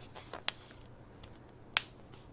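Two sharp clicks about a second and a quarter apart, from a plastic water bottle being handled.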